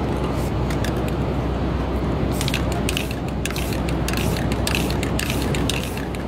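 Aerosol spray-paint cans hissing in short, quick bursts, mixed with clicks, growing busier a little over two seconds in.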